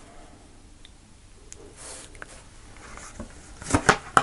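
Low room noise with a few faint card rustles, then near the end a quick run of sharp snaps and flicks as a tarot deck is shuffled by hand.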